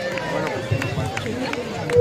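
Indistinct voices of several people talking at once in a crowd, with a faint steady tone running underneath.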